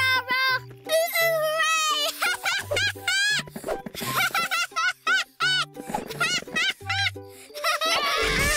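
Bouncy children's cartoon music with a regular bass line, overlaid by a cartoon character's quick, giggling vocal noises in short rising-and-falling syllables.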